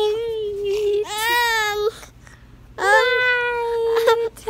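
Toddler's voice in two long, drawn-out high calls. The first is held steady for a couple of seconds, and the second starts late with an upward swoop and is held to the end.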